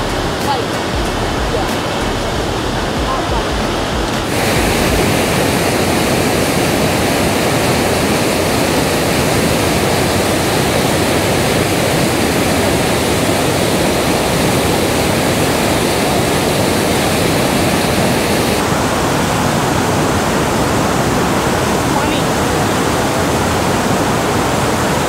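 Waterfall and whitewater of the glacier-fed Sunwapta River: a loud, steady rush of falling water. It turns brighter and hissier about four seconds in, and a little duller about three-quarters of the way through.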